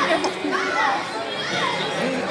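Crowd of devotees calling out and chattering, many voices overlapping, with a few loud high shouts rising and falling.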